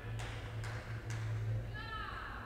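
Three sharp clicks about half a second apart over a steady low hum, with a high voice briefly near the end.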